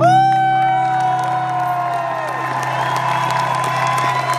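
Electric guitar's final chord struck and left ringing, a high note swooping up and holding over a sustained low note. The crowd starts to applaud and cheer under it.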